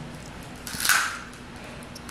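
Small plastic handheld pencil sharpener, its blade shaving a colouring stick as it is twisted: one short scraping rasp about halfway through, otherwise faint.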